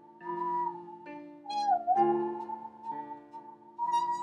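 Bowed musical saw (a 26-inch Stanley handsaw) singing one high, held note that slides down and back up about halfway through, over a piano karaoke backing track.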